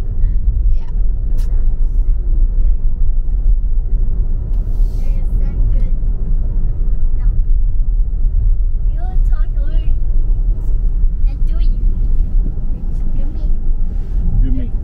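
Steady low rumble of road noise inside the cabin of a moving car.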